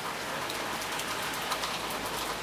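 Steady rain falling on wet pavement, with many separate drops ticking through the hiss.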